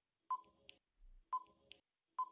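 Countdown timer sound effect: short electronic beeping ticks, one a second, each followed by a fainter click, two of them with silence between.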